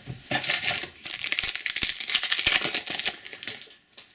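Trading-card booster pack wrapper crinkling and tearing as it is opened by hand, a dense run of crackles lasting about three seconds.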